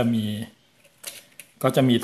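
Small metallic clicks from a Nikon FM2's battery compartment cover, unscrewed with a coin and lifted off about a second in, between stretches of a man speaking Thai.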